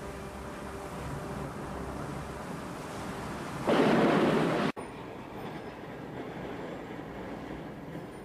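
Heavy rain pouring steadily under a faint low drone, then a sudden loud rushing blast about three and a half seconds in that lasts about a second and cuts off abruptly, leaving a quieter background.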